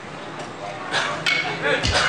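Background voices with a few short clicks and knocks. Near the end comes one low thump, a kick drum from an electronic drum kit sounding through the PA during a soundcheck.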